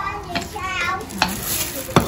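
A utensil clinking and scraping against a frying pan as stir-fried beef is scooped out onto a serving plate: three sharp clinks, the loudest just before the end, over a light hiss from the pan.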